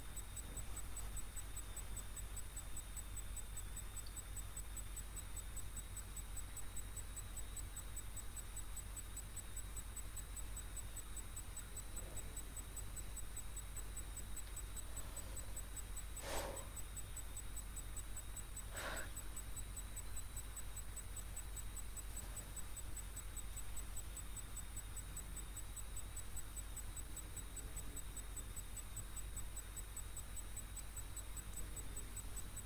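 Steady low hiss and hum of the recording with a faint, thin high whine. Two short clicks come about two and a half seconds apart, a little past the middle.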